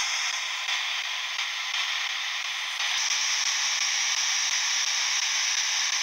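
Steady static hiss, like a radio between stations or an electronic noise device, that steps up slightly in level about three seconds in.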